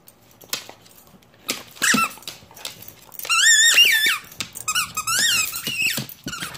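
Squeaker inside a plush reindeer dog toy squeaking as a Dalmatian bites down on it: a short squeak about a second and a half in, then two longer runs of wavering squeaks in the second half, with light clicks in between.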